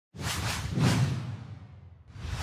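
Whoosh sound effects for an animated logo intro: two swishes about half a second apart, the second louder with a deep low rumble, trailing off.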